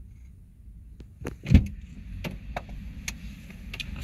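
A car door shutting with a heavy thump about one and a half seconds in, followed by a few light clicks and knocks.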